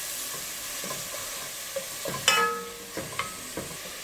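Chopped onion and garlic sizzling in oil in a stainless steel pot while a wooden spatula stirs them, scraping and tapping on the pot. There is one sharper knock with a brief ring about halfway through.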